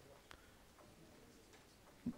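Near silence: room tone through the hall's microphone, with a faint click about a third of a second in.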